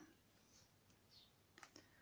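Near silence, with a few faint clicks near the end as the cardboard box of a tarot deck is handled.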